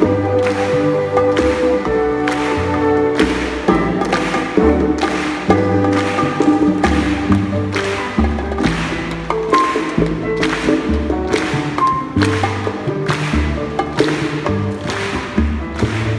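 A live Latin jazz band playing with a chamber orchestra: a steady rhythm of percussion strokes over a moving bass line and sustained melody notes.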